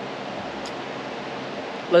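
A steady, even background hiss with no events in it, like a fan or air handling running in the room; a man's voice starts again at the very end.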